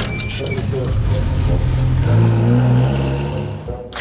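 Old Land Rover's engine running as the gear lever is worked, its pitch stepping up about two seconds in as it pulls away, with music over it; the sound cuts off just before the end.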